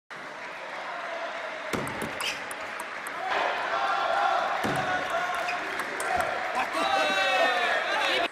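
Table tennis ball clicking sharply off rubber paddles and the table during a short rally, followed by voices calling out in the hall, with a long falling-pitched call near the end.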